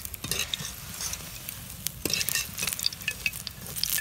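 Cabbage pakoras sizzling and crackling in hot frying oil in an aluminium kadai, with a wire mesh skimmer scraping through the pan as the fried pakoras are lifted out. The crackling gets busier about two seconds in.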